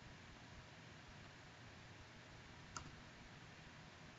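Near silence, broken by a single faint computer mouse click almost three seconds in.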